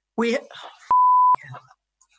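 A censor bleep: a single steady high beep of about half a second, louder than the speech around it, cutting in and out abruptly over a woman's swear word.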